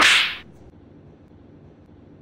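A single sharp, whip-like swish lasting under half a second as a towel is flung onto a person's head.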